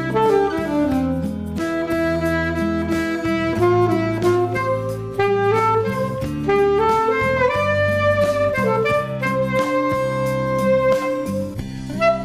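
Alto saxophone playing a melody of held notes, moving step by step, over a steady backing accompaniment with sustained low bass notes.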